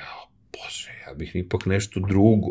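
Speech only: a man talking quietly, partly in a whisper, after a brief pause near the start.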